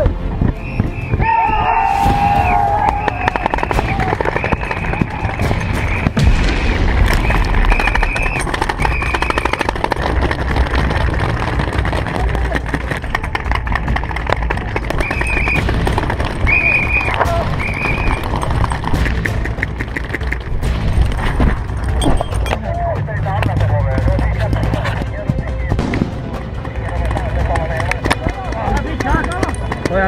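Paintball markers firing in many rapid, overlapping pops, with players shouting and holding long yells over a steady rumble.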